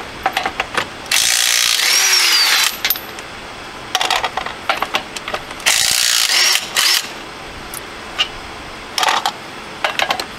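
Ryobi P261 half-inch cordless impact wrench hammering on truck wheel lug nuts torqued to 120 ft-lb, run on speed 3. It goes in three bursts: a long one about a second in, another just past the middle and a short one near the end. Clicks and rattles of the socket and lug nuts fall in between.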